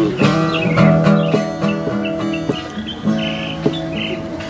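Acoustic guitar being strummed and picked, chords and single notes ringing out one after another.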